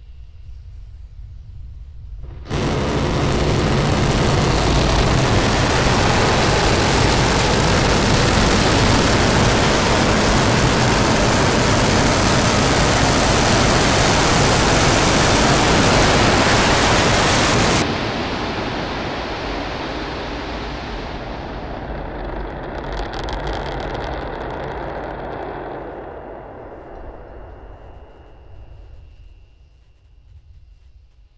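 Starship SN10's Raptor rocket engines light with a sudden loud, steady roar about two and a half seconds in for the flip and landing burn. The noise runs at full strength for about fifteen seconds and cuts off sharply at engine shutdown on touchdown, leaving a rumble with a brief crackle that fades out near the end.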